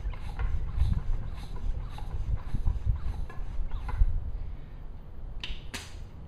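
Bicycle floor pump being worked at a tyre valve, with short strokes of air about two a second. Near the end come two short, sharp bursts of hiss.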